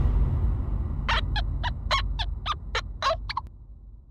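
A quick run of about ten short, pitched bird-like calls, like a turkey's gobble, starting about a second in and breaking off suddenly before the end, over a low rumble that fades away.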